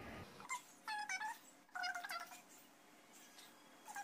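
A cat meowing faintly in the background: three short calls about a second apart, and another near the end.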